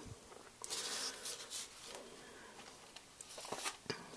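Faint rustling and handling noises as a frosted cupcake in a paper liner is moved about by hand, with a few light taps near the end.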